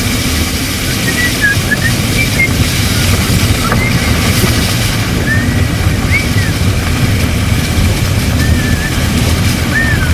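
A vehicle's engine running with a steady low rumble, heard from inside the cab, with a few faint short chirps scattered through it.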